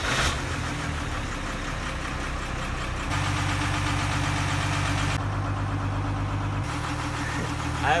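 A trawler's inboard diesel engine idling steadily in neutral after warming up, the rebuilt Paragon transmission not yet put in gear. About three seconds in the hum grows louder and fuller, heard through the open engine-room hatch, and it eases slightly near the end.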